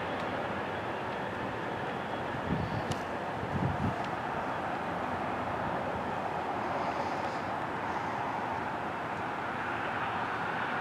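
Amtrak passenger train heard from behind as it moves away, a steady distant rumble of its wheels on the rails.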